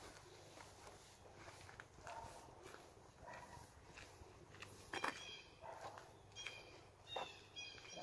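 Blue jays calling back and forth, faint and at a distance, with several short calls in the second half. Footsteps on grass and leaf litter can be heard under them.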